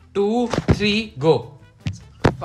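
Excited voices with two sharp thunks, about a second apart, of hands slapping down on a tabletop as players race to grab a ball and answer.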